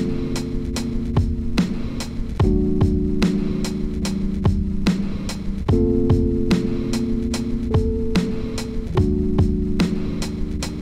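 Vintage Rhodes-style electric piano (Stage-73 V plugin) played from a MIDI keyboard: slow held chords, changing about every three seconds, over a drum loop with kick and hi-hats slowed to 75 BPM. It is a live chord take being recorded to flip into a sample.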